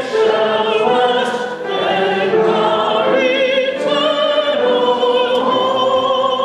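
Church congregation singing a hymn together, held notes with vibrato moving from pitch to pitch.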